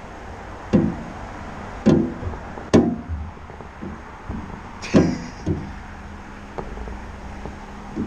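Several sharp knocks and thumps on the basket of an aerial work platform. From about five and a half seconds in, a steady low hum from the platform's drive starts up.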